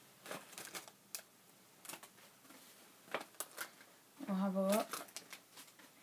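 Several short bursts of crackling and rustling as a trading-card pack wrapper is torn open and the cards handled. About four seconds in, a brief voice sound at one steady pitch.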